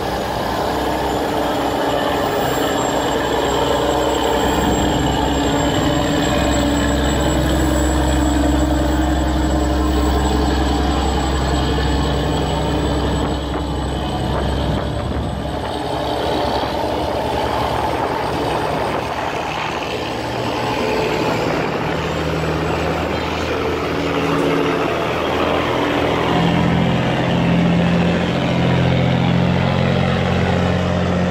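Boat engines running as a loaded sand barge is pushed through a river sluice gate, over the rush of churning water. The engine note changes about two-thirds of the way through.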